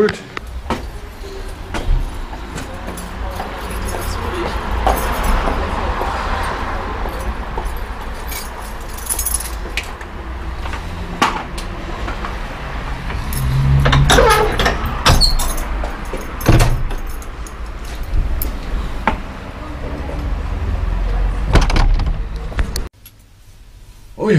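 Keys and shop doors being worked while the shop is locked up: scattered clicks and clanks over a steady low rumble of handling noise on a body-worn camera. It all cuts off suddenly near the end.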